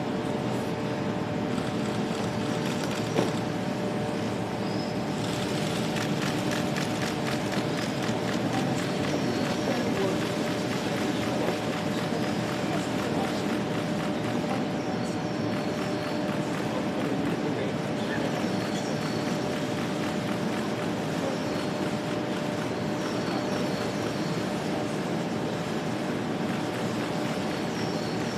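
Steady street noise with a low engine hum from a waiting vehicle, under faint background voices, with a single short knock about three seconds in.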